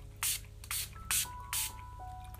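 Urban Decay De-Slick setting spray pump bottle misting onto the face: four short hissing spritzes about half a second apart.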